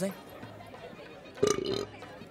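A man's loud burp, about half a second long, about a second and a half in.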